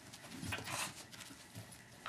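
Two small terriers scuffling in play on carpet: soft rustling and a few light knocks, loudest from about half a second to a second in.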